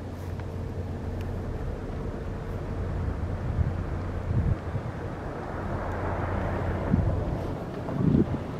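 Gusts of wind on the microphone over a steady low hum.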